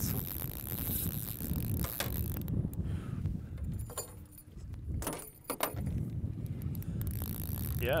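Spinning reel ticking and clicking as a hooked northern pike is played on a bent rod, with a few sharper clicks about five seconds in, over a steady low rumble.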